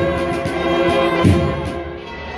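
A Spanish cornet band (banda de cornetas), massed bugles playing long held chords, with one deep beat about a second in.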